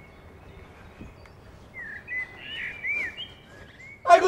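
A bird chirping: a quick run of short whistled calls, rising and falling in pitch, in the second half, over a low steady outdoor background.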